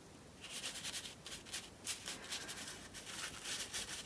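An oversized paintbrush scrubbing acrylic paint onto thick painting paper in uneven back-and-forth strokes: a faint scratchy rubbing that starts about half a second in.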